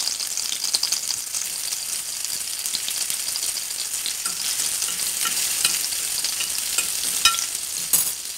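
Oil sizzling and crackling steadily around tomato slices frying in a baking dish on a stove burner. Over the second half, a utensil pushing the slices aside makes a few light clicks against the dish.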